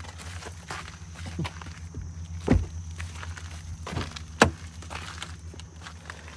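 Footsteps on a gravel and dirt driveway: a few separate steps, with one sharper tap about four and a half seconds in.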